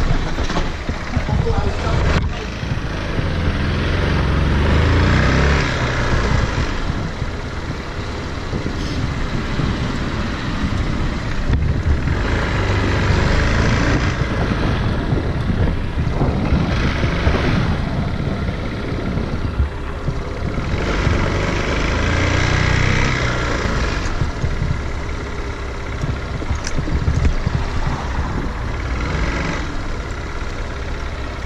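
Motorcycle engine running while the bike rides slowly at low speed. Its low rumble swells and falls back every few seconds as the throttle is opened and closed.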